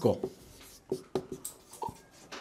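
Marker pen writing on a whiteboard: a run of short strokes and taps about a second in.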